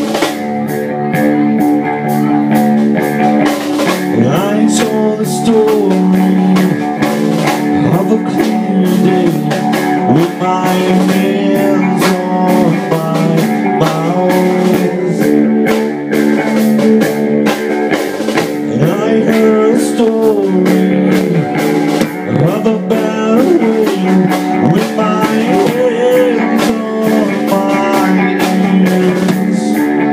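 Live rock band playing: electric guitar, bass guitar and drum kit, with the guitar's notes bending up and down in pitch over a steady drum beat.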